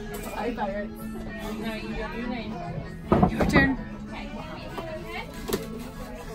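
Indistinct speech over quiet background music with steady held notes, with a louder voice about three seconds in.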